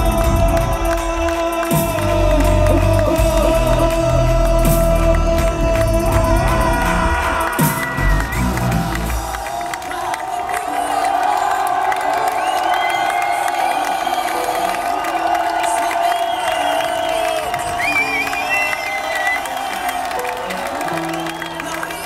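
Live hip hop beat with heavy bass and a steady held note, the beat cutting out about nine seconds in while the note carries on. A concert crowd cheers and whoops throughout, more exposed once the bass stops.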